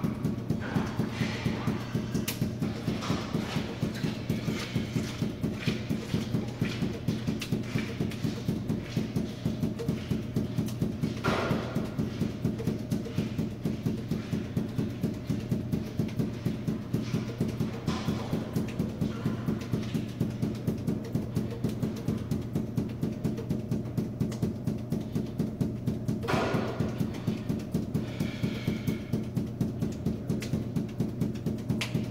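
Five juggling balls force-bounced off a hard floor and caught, making a fast, even rhythm of bounces, over a steady low hum.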